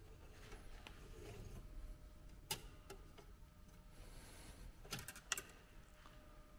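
Faint clicks and light knocks of hands working on plastic parts in a car's engine bay, one sharp click about midway and a quick cluster near the end, over quiet room tone.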